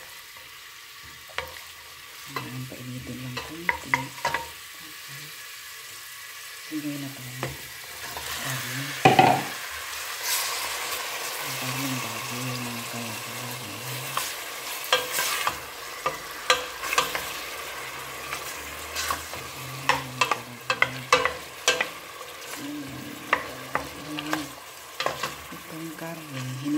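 Chopped onion frying in olive oil in a stainless steel pot, stirred with a wooden spoon that knocks and scrapes against the pot many times. About nine seconds in there is a loud clatter as raw pork cubes go in, and after that the sizzle is louder and denser.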